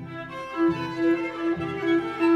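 Background music on bowed strings, violin and cello, with one note repeated in pulses about twice a second.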